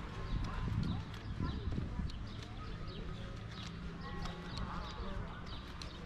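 Footsteps on stone paving at a walking pace, sharp clicks of shoes over a low hum of street noise.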